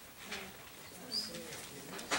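Low, quiet voices of class members murmuring answers to a question, with a brief high squeak just after a second in.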